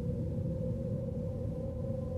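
Low, steady ambient drone: one held mid tone over a low rumble, with a higher tone faintly joining near the end.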